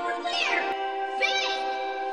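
Vocoded cartoon soundtrack: steady held chord tones with three short swooping pitch glides, where a voice or melody has been run through a vocoder.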